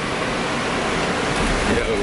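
Steady rushing noise inside a moving shuttle bus's cabin, the air-conditioning and running noise of the bus, loud as hell.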